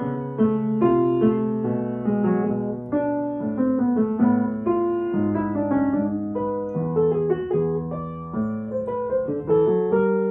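Upright piano played at a walking pace, a steady run of notes in bass and middle registers, sight-read from the score.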